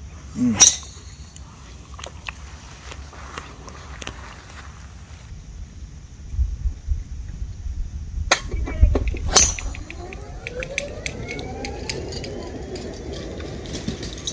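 A golf driver striking the ball off the tee, a sharp crack about nine seconds in, with a smaller click about a second before it, over wind rumble on the microphone. After the shot a rising whine climbs in pitch for a few seconds.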